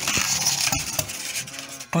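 Plastic film and styrofoam packing being handled and pulled from a new PC case's box: irregular crackling rustle with a few sharp clicks.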